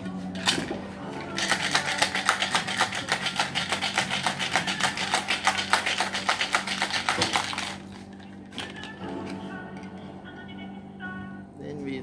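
Ice rattling hard inside a cocktail shaker, a metal tin sealed over a mixing glass, shaken fast and evenly for about six seconds from a second or so in, then stopping.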